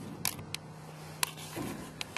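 Handheld video camera being picked up and handled, giving three sharp clicks and knocks over a faint low steady hum.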